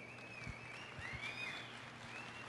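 Quiet hall sound with a few soft knocks and a thin, wavering high tone that glides up and down.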